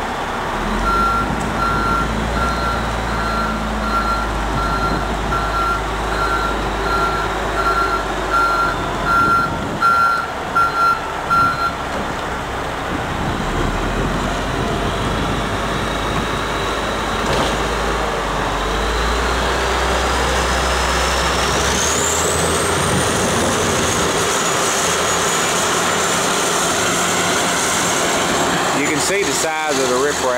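Diesel heavy equipment running, with a reversing alarm beeping about twice a second for the first ten seconds or so. About two-thirds of the way in, a rising whine climbs as an engine revs up, then holds.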